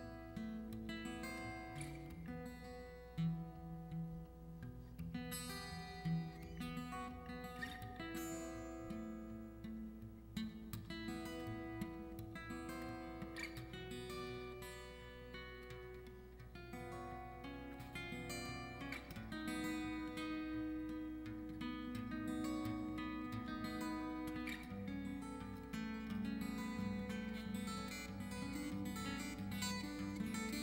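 Solo fingerstyle acoustic guitar playing an instrumental piece of picked notes and chords, with two sharp accented hits about three and six seconds in.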